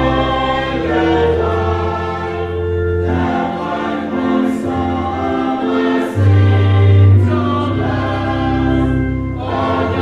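Church congregation singing a hymn together, with instrumental accompaniment holding sustained chords over a deep bass line that swells about six seconds in.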